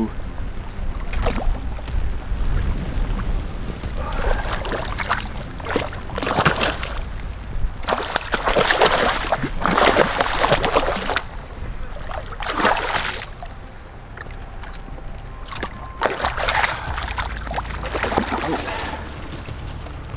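A hooked trout thrashing at the surface close to the bank, making a string of water splashes, with the longest, heaviest run of splashing about eight to eleven seconds in. A steady low rumble runs underneath.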